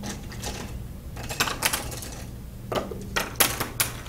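Clicks and light clatter of a pencil being picked up and handled, in a few quick runs of sharp knocks, the thickest near the end. A steady low electrical hum runs underneath.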